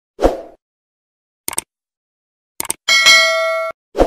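Sound effects of an animated logo end screen. A low thump, short clicks about a second and a half in and again a second later, then a bell-like ding with several steady tones that rings for most of a second and cuts off suddenly, and another thump at the end.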